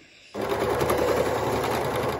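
Overlocker starting up about a third of a second in and then running steadily at speed, stitching over the slightly bulky seam join of a ribbed t-shirt neckband.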